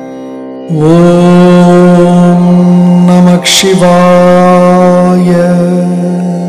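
Devotional mantra chant to Sai Baba over a steady drone. A voice holds long notes, broken once by a short hiss about three and a half seconds in, and fades near the end.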